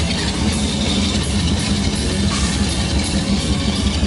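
Hardcore punk band playing live and loud: distorted electric guitar, bass guitar and drum kit in a dense, continuous wall of sound.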